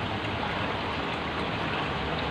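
Aquarium air stone bubbling, a steady hiss of rising bubbles in the tank water.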